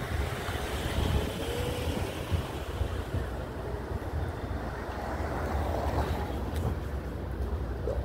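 Street traffic: car engines running and moving on the street, a steady low rumble.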